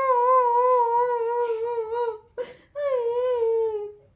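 A woman's mock crying behind her hands: two long, wavering wails with a short break a little after two seconds in, stopping just before the end.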